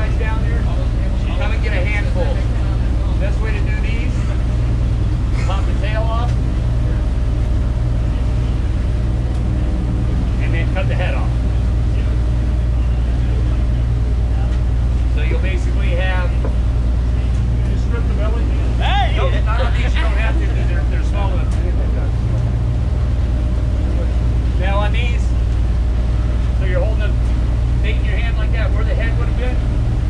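Steady low drone of a large fishing party boat's machinery running.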